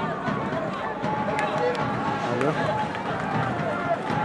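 Voices talking and calling out over the live sound of a football match, with a few sharp clicks.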